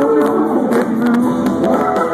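Live rock band playing on an amplified stage, electric guitars and drums carrying an instrumental stretch just after a sung line ends.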